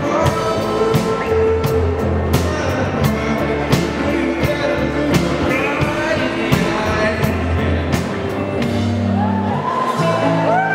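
Male vocalist singing through a microphone over amplified electric guitar and a steady beat. Near the end the beat drops away and the music changes.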